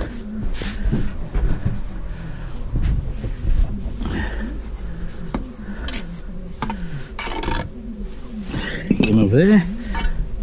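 A steel bricklaying trowel scraping and clinking against mortar and lightweight concrete blocks in short, irregular strokes, as mortar is cut off and pointed into the joints. A man's voice hums or sings a few notes near the end.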